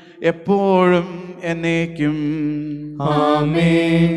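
A priest chanting a liturgical prayer: one man's voice intoning phrases on long held notes with short breaks between them, the longest and loudest note starting near the end.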